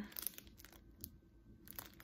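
Clear plastic packaging sleeve crinkling faintly as it is handled, in a few brief crackles.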